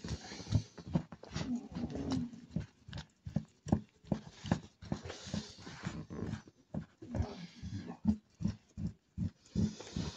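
Wet, irregular squelching and smacking of oiled hands rubbing and kneading a bare foot during an oil massage, several sharp smacks a second, with a faint rustle of plastic sheeting.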